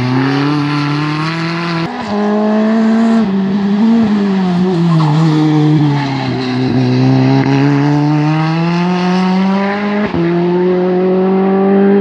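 Open-wheel single-seater race car's engine running hard. Its note falls as the car slows for a hairpin, lowest about six and a half seconds in, then rises steadily as it accelerates out, with a sharp break in the note about ten seconds in.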